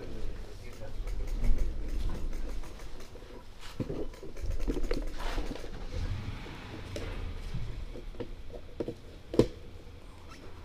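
Indistinct voices of passers-by over low rumble and handling noise at the action camera's microphone, with a single sharp click shortly before the end.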